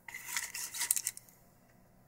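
Plastic packaging, a clear plastic bag and a vacuum-formed plastic tray, crinkling and crackling as it is handled, stopping a little over a second in.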